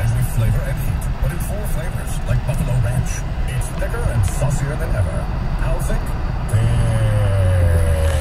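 Steady road and engine noise inside a car moving along a highway, with radio talk and music playing faintly underneath. About six and a half seconds in, a long tone joins, sliding slowly down in pitch.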